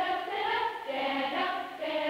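A group of people singing together, with long held notes.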